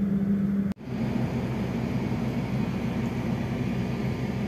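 Steady mechanical hum of a passenger train heard from inside the coach. About a second in, the sound cuts out abruptly, then a rougher steady hum carries on.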